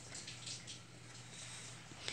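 Quiet room tone with a low steady hum and a few faint soft rustles of a hand on the pages of a thick-paper colouring book.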